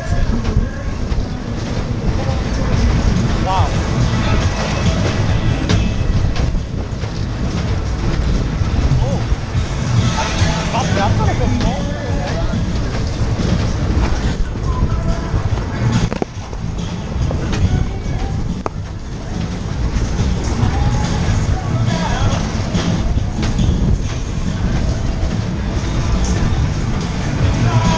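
Ski Jump funfair ride running, heard from on board: a loud, continuous rumble and rattle of the car running round its track.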